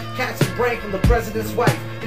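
Hip-hop beat with kick drum hits, with a rapped vocal over it.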